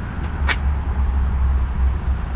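A steady low rumble with one sharp click about half a second in.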